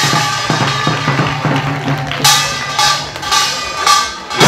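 Korean nongak (pungmul) folk music: janggu hourglass drums beat a rhythm over a steady reedy melody line from a taepyeongso shawm, with a loud metallic crash about two seconds in.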